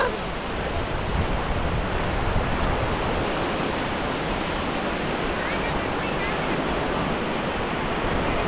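Waves breaking and shallow surf washing in and out, a steady rushing noise with no pauses.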